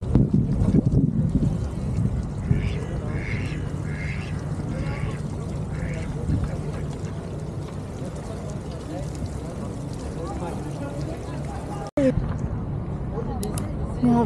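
A duck quacking about five times, roughly a second apart, a few seconds in, over a steady murmur of people's voices.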